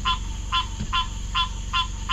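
A frog calling over and over, a short nasal honk repeated about two or three times a second, over a steady low hum.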